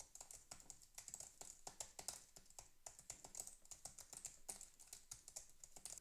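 Computer keyboard being typed on: a steady, irregular run of faint key clicks. They are picked up by the Antlion USB 2 headset boom microphone during a background-noise isolation test, and the typing comes through only faintly.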